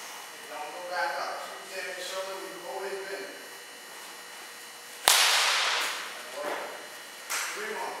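Baseball bat hitting a pitched ball once about five seconds in: a single sharp crack, followed by a couple of fainter knocks. A faint voice is heard early on.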